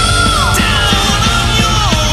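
Heavy metal song with drums and distorted guitars, and a high, held note that slides down in pitch about half a second in and again near the end.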